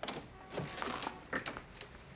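Door handle and latch of a wooden door clicking as the door is unlatched and pulled open: a few light, separate clicks and knocks.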